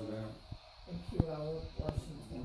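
Indistinct voices talking in a small room, with a couple of short clicks near the end.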